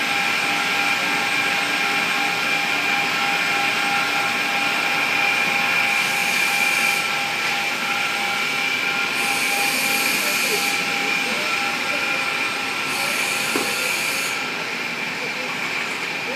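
Bavelloni NRG250 CNC glass-working machine running at rest, a steady mechanical hum with several steady whining tones. A hiss joins it three times, for about a second or two each: once about six seconds in, again at about nine seconds, and again near the end.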